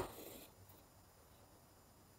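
Embroidery thread drawn through fabric stretched in a hoop: a short scratchy rasp in the first half second, then near quiet.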